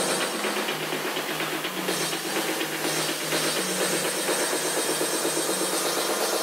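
Electronic dance music from a DJ set with the bass and kick drum filtered out, leaving a run of fast repeating synth notes: a breakdown in the mix.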